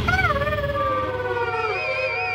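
A long howl-like wail that falls slowly in pitch for nearly two seconds, part of a cartoon soundtrack. A high warbling tone comes in near the end.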